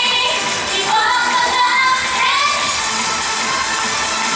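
Japanese pop song performed live: female voices singing a melody into microphones over a backing track.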